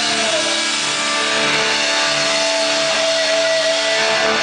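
Live rock band holding a long sustained note with the drums stopped: one high tone dips slightly early on and is then held steady over lower sustained chords.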